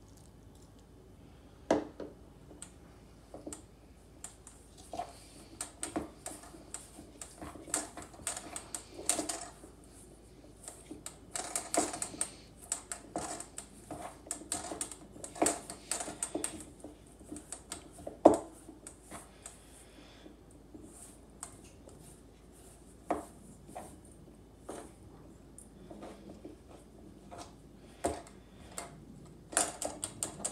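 Metal spoon stirring a thick peanut butter powder and casein protein dough in a stainless steel bowl: irregular clinks and scrapes of the spoon against the bowl, the sharpest clink about eighteen seconds in.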